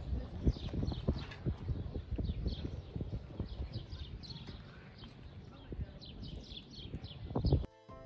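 Hooves clip-clopping at a walk on stone, a few steps a second, with short high falling chirps above them. The field sound cuts off near the end and music starts.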